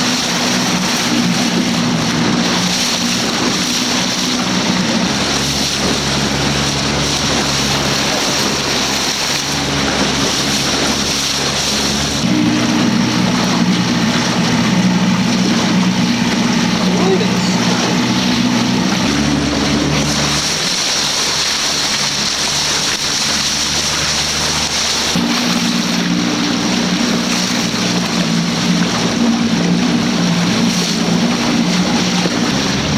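A small motorboat's engine running steadily under way, its low drone shifting pitch in steps a few times, over water rushing and splashing past the hull.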